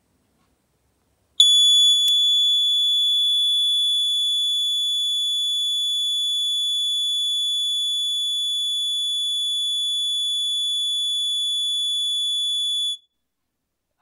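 Buzzer of a homemade LM358 op-amp high-temperature alarm sounding one steady, high-pitched tone: it comes on about a second and a half in, once the lighter flame has heated the thermistor past the threshold set by the preset, and cuts off sharply about eleven seconds later as the sensor cools below it.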